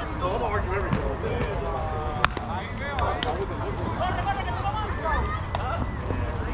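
Players' voices calling across an outdoor softball field over a low rumble, with one sharp crack about two seconds in, typical of a bat hitting a slowpitch softball, and a few fainter clicks after it.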